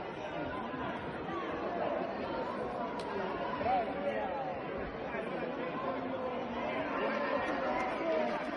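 Indistinct chatter of many people talking at once, a steady hubbub of overlapping voices with no single speaker standing out.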